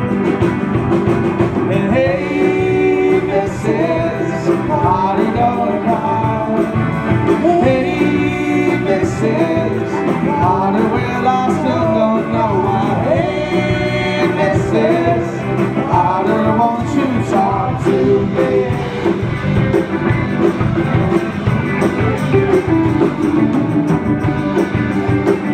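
A live rock band playing an instrumental passage with guitars and a drum kit. A lead melody line bends and weaves over the band through the first two-thirds or so.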